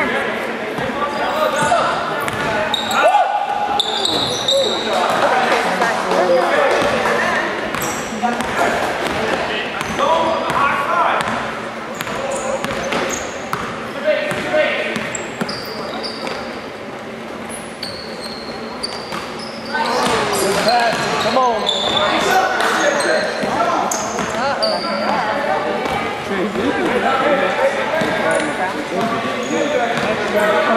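Basketball game sound in a gymnasium: a basketball dribbling on the hardwood floor, sneakers squeaking in short high chirps, and spectators' voices, all echoing in the large hall.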